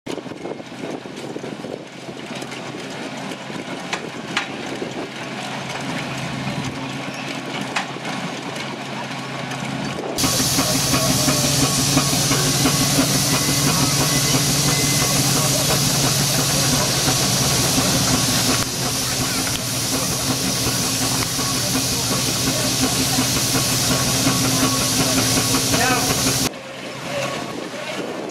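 A threshing machine driven by a steam traction engine runs with a steady hum. A loud steady hiss joins about ten seconds in and drops away shortly before the end.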